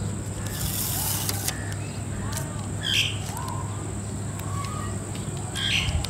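A vinyl sticker's backing paper being peeled off by hand, a short crackling rustle about a second in, then the sticker pressed onto a bicycle's steel frame with a few light rustles. Faint chirps sound in the background over a steady low hum.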